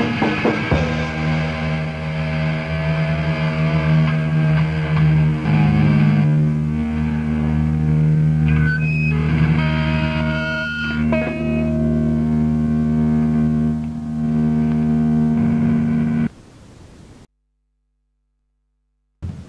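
Rock band recording: distorted electric guitar holding a sustained, ringing chord with effects, higher notes sounding over it midway. It cuts off abruptly about 16 seconds in, leaving a brief faint tail and then silence, as at the end of a song.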